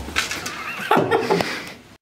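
A person's voice giving a high, wavering cry, then short choppy vocal bursts about a second in, fading out near the end.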